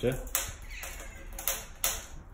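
Footsteps on a concrete floor: three short, sharp scuffs at uneven spacing.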